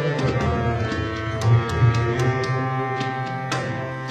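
Instrumental passage of a ghazal: harmonium holding sustained notes, with tabla strokes struck over it.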